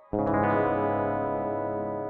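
Background music: a loud sustained chord struck just after the start and held steady.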